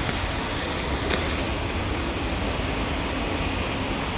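Steady low rumble of background noise in a concrete parking garage, with a few faint ticks.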